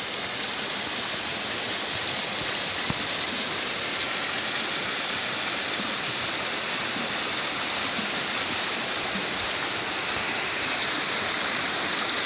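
Steady rush of a flowing river, with a small waterfall splashing down a rock face into it; a thin, steady high-pitched tone sits over the water noise.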